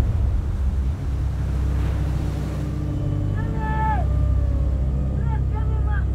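A deep, steady low rumble, with a few short high calls over it from about three seconds in, one of them gliding down in pitch.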